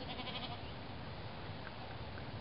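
A goat bleating once, briefly, right at the start, over a steady low background rumble.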